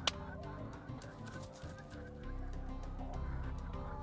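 White hen clucking softly as it is roused from a hypnotised, trance-like state on its back. There is a single sharp hand clap near the start.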